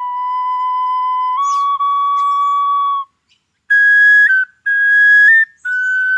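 A wooden flute played solo in a slow, breathy melody. A long low held note steps up once, a short pause comes about halfway, then a louder, higher phrase of shorter held notes follows.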